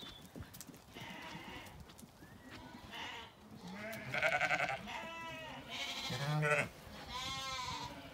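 Zwartbles sheep bleating: about five bleats in close succession from about three seconds in, some with a quavering pitch.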